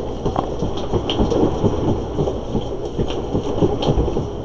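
Dense crackling and rumbling handling noise: plastic bags rustling as a hand rummages through a bin of packets, with the camera being moved and rubbed about.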